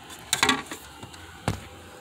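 A few light clicks and knocks from loose plastic trim pieces and a tool being handled: a short cluster about half a second in and a single sharp click about a second and a half in.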